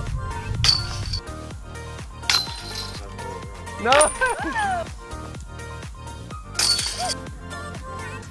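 Discs striking the hanging metal chains of a disc golf basket, a short chain jangle several times, over background music with a steady beat.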